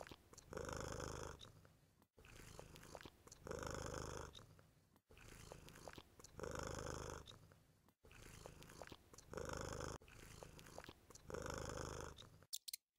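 Sound effect of a sleeping lion snoring: a low rumbling breath, in then out, repeating about every three seconds.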